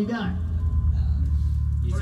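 A steady low electric tone from the band's amplified gear, held level with no decay, with a faint thin higher tone alongside it. A man's voice trails off right at the start.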